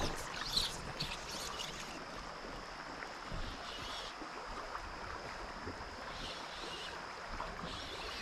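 River water flowing steadily past, a soft even rush, with a faint steady high-pitched tone throughout and a couple of small soft knocks.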